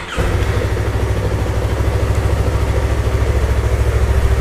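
A 2021 Yamaha R3's 321 cc parallel-twin engine is started with the electric starter and catches almost at once, then runs at a steady idle that grows slightly louder. It runs smoothly on its stock exhaust.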